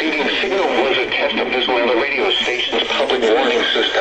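A weather radio's speaker playing the NOAA Weather Radio broadcast voice, part of the spoken explanation that follows the weekly test of the alert tone and receivers.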